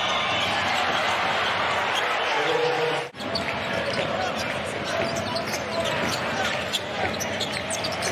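Arena sound of a live basketball game: a steady crowd hubbub with a basketball dribbling on the hardwood court and short sharp court sounds. The sound drops out briefly about three seconds in, at an edit, then picks up again.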